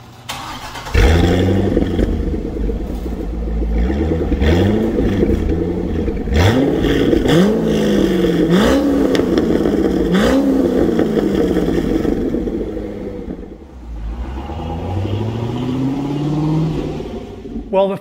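Chevrolet C6 Corvette's LS2 V8 heard from behind through its quad exhaust. It starts about a second in with a loud flare, then idles and is revved in about five quick blips, each a sharp rise in pitch falling back. Near the end it makes one slower rev.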